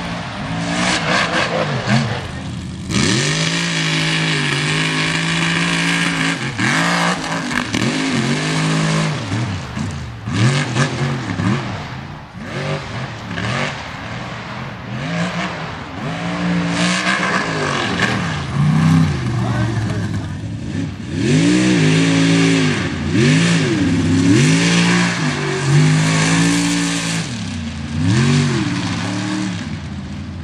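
Mega truck engine revving hard, its pitch climbing and falling again and again as the throttle is worked around a dirt course, over a steady rushing noise.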